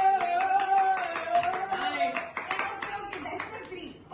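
Quick clacks of hard plastic cups being stacked and set down on a tabletop, mixed with hand claps, under a long drawn-out voice held for about the first two seconds.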